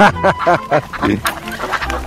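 Ducks quacking, a quick run of short calls one after another.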